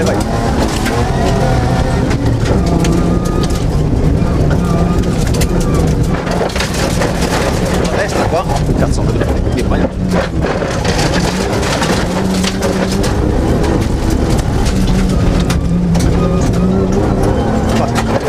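Suzuki Grand Vitara cross-country rally car heard from inside the cabin at speed on a gravel stage. The engine runs hard, its pitch stepping up and down several times, over steady tyre and gravel noise with frequent knocks and rattles.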